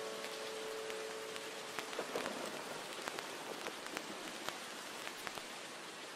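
Rain ambience: steady falling rain with scattered individual drops ticking, slowly fading, while the last held note of a song dies away about a second in.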